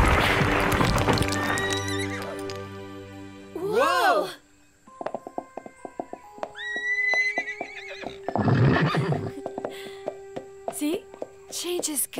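A rock pile breaking apart and crashing down, a loud rumble that fades over the first few seconds. A unicorn's whinny follows at about four seconds, and another comes near the end, over light plucked cartoon music.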